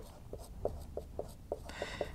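Marker pen writing on a whiteboard: a quick run of short strokes and taps, about five a second.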